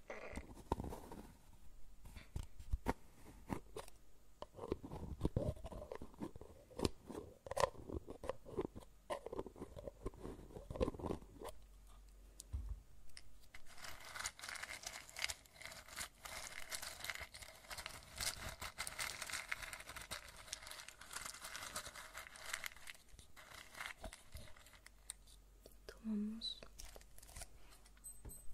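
Close-miked handling sounds: a scatter of small taps and clicks, then from about halfway a small glass jar's lid being worked and the jar handled, making a dense scraping rattle for about nine seconds before a few last clicks.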